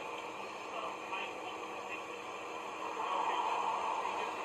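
Faint, muffled voices from a video playing on a screen, under a steady hiss, growing a little louder near the end.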